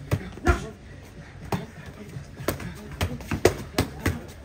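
Boxing gloves hitting focus mitts: a run of sharp slaps, irregularly spaced and coming quicker near the end.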